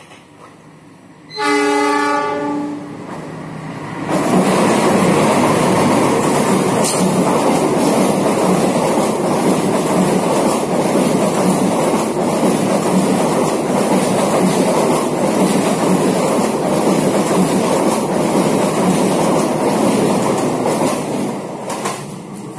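Diesel locomotive of a passenger train sounding its horn once, about a second and a half long, as it approaches. The train then runs close past, a loud steady rush of engine and rolling wheels on the rails as the coaches go by, easing off right at the end.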